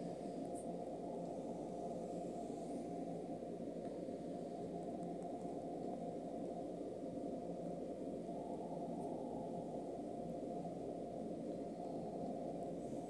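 Steady low background hiss, even and unchanging, with no distinct events.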